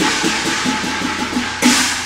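Cantonese opera percussion ensemble playing: quick drum strokes under ringing cymbals, with a fresh crash about one and a half seconds in.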